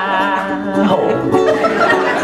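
A woman singing a held note over a strummed ukulele; the voice stops about a second in and the ukulele plays on.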